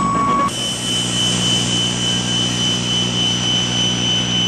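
Experimental electronic music: a steady high sine tone over hiss cuts off abruptly about half a second in, giving way to a dense, unchanging noise drone with a low hum and two thin, high whistling tones held above it.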